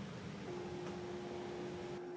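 Faint room noise, then a steady faint electrical hum that begins about half a second in.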